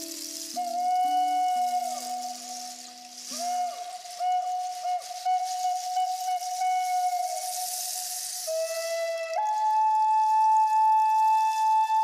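Wooden Native American–style flute playing a slow melody of long held notes with soft downward pitch bends, over lower sustained tones that stop about three and a half seconds in. Near the end it steps up to a higher note held to the close.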